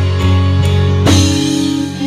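Live gospel worship music from a band with guitar, bass and drums, held chords under a steady beat, with a drum stroke about a second in.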